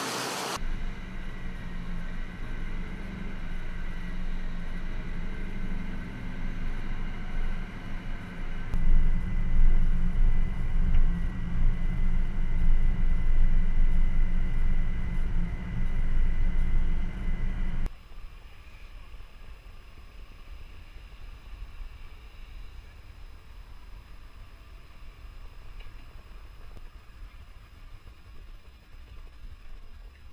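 Steady low rumble of a vehicle driving over the salt flat, engine and tyre noise, growing louder about nine seconds in. It cuts off suddenly just past halfway, leaving a faint open-air hiss.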